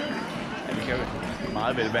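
Voices talking in a large sports hall, with a dull thud about a second in.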